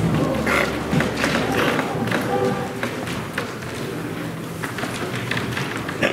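Scattered knocks and thuds with a few brief musical notes, as a church band gets ready to play.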